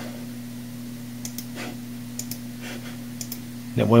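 A few faint, separate computer-mouse clicks over a steady low hum, as partitions are selected and deleted in an installer.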